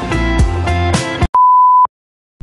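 Background music with a beat and guitar stops abruptly a little over a second in, followed by a single steady, pure electronic beep about half a second long that cuts off sharply.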